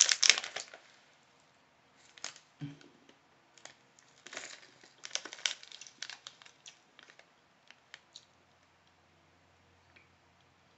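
Plastic snack bag of almonds crinkling as it is handled, loud at first and dying away within the first second, then scattered quieter crinkles and clicks for several seconds before it goes quiet.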